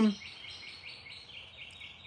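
Outdoor chirping in the background: a rapid, even series of short, high chirps from a bird or insect chorus.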